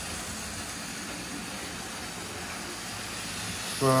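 A Lima OO gauge GWR 94xx pannier tank model locomotive running round the layout with its coaches: a steady whir of the motor and rumble of wheels on the track, growing slightly louder near the end as it comes close.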